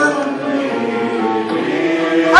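A woman singing a Turkish art song into a microphone, accompanied by flute and oud, with sustained notes held through the moment.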